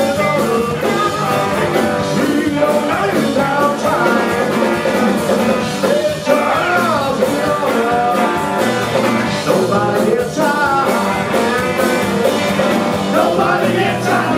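Live blues-rock band playing, with singing over electric guitar, keyboards, bass, drums and horns.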